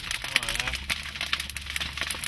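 Crackling of a burning sugarcane field: a dense, irregular run of sharp pops and snaps over a low steady hum. A faint voice is heard briefly about half a second in.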